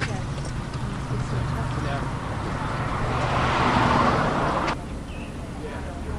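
A car driving off at the curb: engine and tyre noise swelling over a low rumble and cutting off suddenly about five seconds in.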